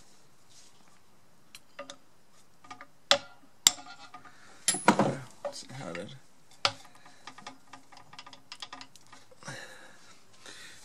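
Metal gear parts of a KitchenAid stand mixer's gearbox clicking and clinking as the bevel gear is turned and pushed down its shaft to seat its recess over the drive pin. There are a few sharp knocks in the middle, then a run of light ticks.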